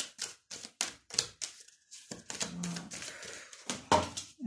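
Tarot cards being shuffled and handled to draw the next card: a quick, irregular run of crisp card clicks and snaps, with a short low murmur from the reader a little past the middle.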